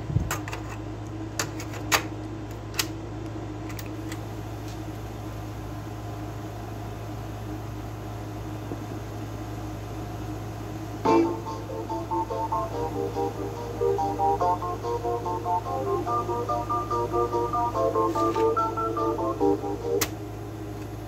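A few clicks from the Sony CFD-S50 boombox's cassette buttons over a low steady hum, then about eleven seconds in a song starts playing from a cassette through the boombox's speakers.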